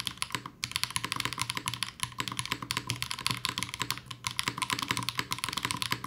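Fast, continuous typing on a Class 0413 custom mechanical keyboard fitted with HMX Jammy switches, a plate with plate foam and GMK keycaps, the board sitting directly on a bare desk with no desk pad. The keystrokes run together into a dense, deep clatter, with brief lulls about half a second in and at about two seconds.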